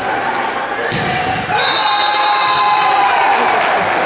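A volleyball struck hard, one sharp smack about a second in as the rally ends, followed by a referee's whistle held for about a second and a half. Players and spectators shout throughout in a large echoing sports hall.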